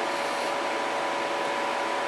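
Electric tower fan running steadily: an even hiss with two faint steady whining tones.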